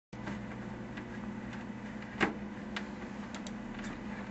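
Steady low hum over faint hiss, with scattered faint clicks and one sharper click a little over two seconds in.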